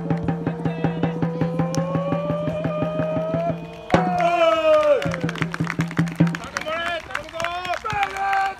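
Supporters' drum beating a fast, even rhythm under a crowd chant held on one slowly rising note. About four seconds in, a loud group shout of greeting cuts in as the team bows, followed by more short shouted calls.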